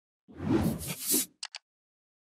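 Logo-reveal sound effect: a whoosh lasting about a second, followed by two short ticks in quick succession.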